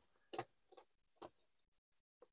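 Near silence with a few faint clicks as an extension cord and its plug are handled.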